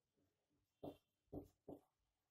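Three brief squeaking strokes of a marker pen on a whiteboard, heard faintly as a word is written.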